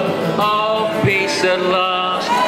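Several men singing a slow anthem together over a strummed acoustic guitar, holding long notes.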